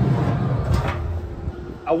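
Metal lid of a Pit Boss Titan pellet grill being lowered and shut, with a clank just under a second in.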